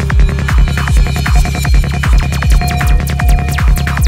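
Psychedelic trance music: a steady kick drum a bit over twice a second over a rolling bassline, with held synth tones and falling high-pitched synth sweeps in the second half.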